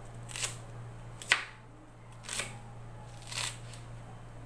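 Kitchen knife chopping a red onion on a hard counter: four separate cuts about a second apart, the second one the loudest.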